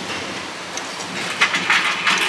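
Backlot tour tram rolling into a set, a steady noise without words; about a second and a half in, a louder hiss with rattling starts suddenly.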